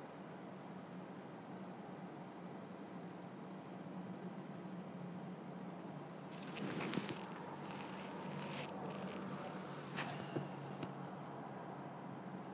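Chevy Colorado pickup's engine idling, heard as a steady low hum inside the cab. Faint rustling comes about halfway through, and a light click follows later.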